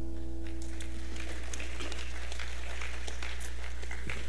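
The worship band's last chord dies away about a second in, leaving a steady low held tone underneath. Scattered light clapping from the congregation follows.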